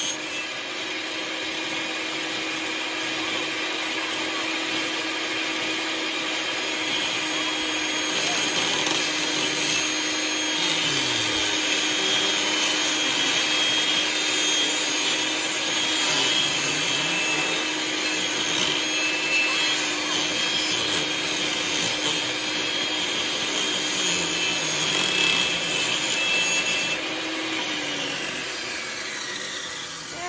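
Table saw running steadily as thin wooden strips are ripped through it, then winding down near the end.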